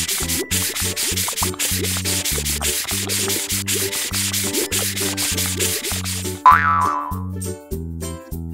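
Cartoon sound effect of a sponge scrubbing a vehicle: a fast, scratchy scrubbing noise over children's background music with a steady bass beat. It stops about six and a half seconds in, where a short swooping tone comes in.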